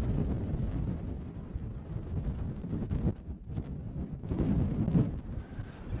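Wind buffeting the microphone in gusts, a low rumbling noise that eases briefly about three seconds in and again near the end.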